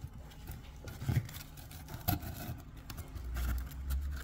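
Light scraping and small taps of a folded cardboard wick rubbing against the inside of a tin can as it is pushed in, over a steady low rumble that swells near the end.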